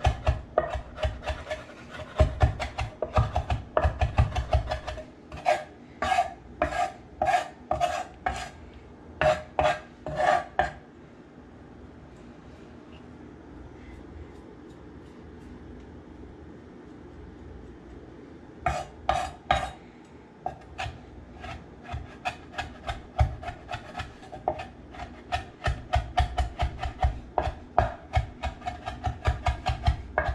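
Kitchen knife chopping fresh herbs on a wooden cutting board: slow, even knocks of the blade on the board, about two a second. The chopping stops for several seconds midway, then starts again a little faster.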